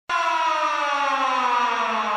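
Siren-like sound effect: one long tone with many overtones that starts abruptly and glides slowly downward in pitch.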